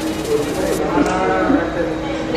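A person's long, drawn-out vocal exclamation, one held and slightly wavering call lasting about a second and a half, amid laughter and chatter.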